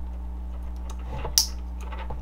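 Small plastic click from a Wago lever connector as a stripped wire is pushed into it. The click comes sharply, once, about one and a half seconds in, with a few fainter clicks of handling around it, over a steady low hum.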